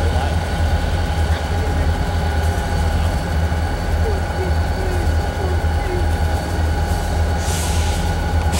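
An engine idling, heard from inside a car: a steady low drone with a constant higher hum over it.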